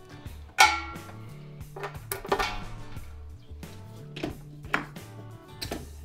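Metallic clacks and clinks of a beer-line disconnect being pulled off and snapped onto the post of a stainless steel keg, the loudest about half a second in and a few more through the rest, over background music.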